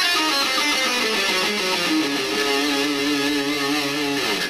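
Electric guitar playing a fast six-note-per-pattern half-step warm-up run, the notes stepping down in pitch for about two seconds. About halfway through it settles on a held note that wavers with vibrato.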